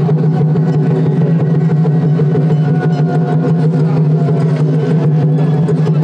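A loud, steady engine-like drone holding one low pitch without change, with faint scattered clicks over it.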